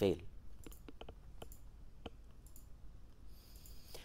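A handful of faint, sharp clicks close together about a second in, another near the middle, then a soft hiss near the end.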